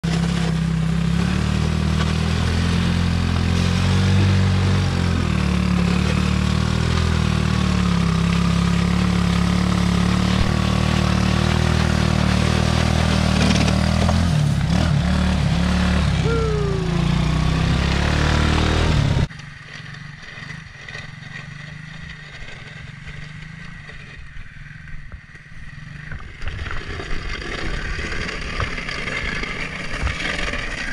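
Small engine of a homemade mini snowplow truck running steadily and loud, close up. About two-thirds of the way through the sound cuts abruptly to a much fainter engine hum, which grows louder again near the end.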